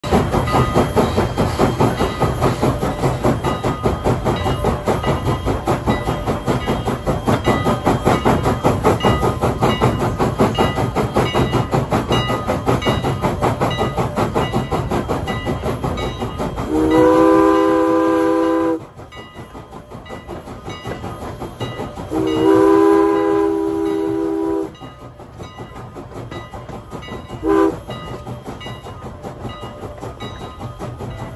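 Strasburg Rail Road No. 89, a 2-6-0 steam locomotive, chuffing with a rapid, steady beat of exhaust. About 17 seconds in, its steam whistle sounds two long blasts and then a short one, the opening of the long-long-short-long grade-crossing signal. After the first blast the chuffing is softer.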